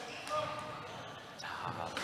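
Faint squash-court sounds between rallies: a light knock, then a short high squeak on the wooden court floor, with a commentator's single word near the end.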